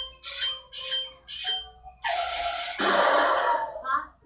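Cartoon soundtrack played from a TV: a few short voice-like sounds, then about two seconds of a loud, harsh, noisy sound effect that thickens partway through and stops just before the end.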